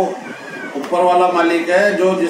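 A man's voice speaking in Hindi, drawing out long held syllables in the second half.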